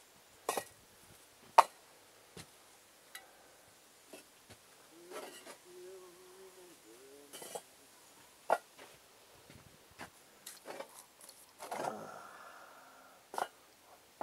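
Scattered sharp knocks and clicks from bricks and bricklaying tools being handled on site, the loudest about a second and a half in, with a short scrape near the end.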